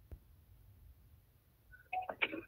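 Near silence with one faint click a moment in, as the phone's file list is tapped. Near the end a short tone sounds and playback of a voice-mail recording begins from the phone.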